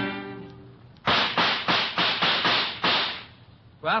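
A rapid volley of about eight gunshots, the sound-effect gunfire of a radio hunting scene. Each is a sharp crack with a short ringing tail, and the volley lasts about two seconds. It comes in as a music bridge fades out.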